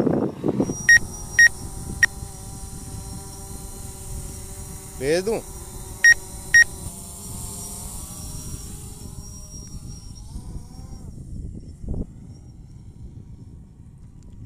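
Five short, sharp electronic beeps, three in the first two seconds and two more about six seconds in, over the steady hum of a DJI Phantom 4 Pro quadcopter's propellers that fades out about ten seconds in.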